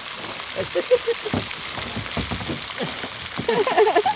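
Steady rain-like splashing of a pond fountain's spray, with scrapes and bumps from a plastic kayak being shoved across grass toward the water. A voice sounds briefly about a second in and again near the end.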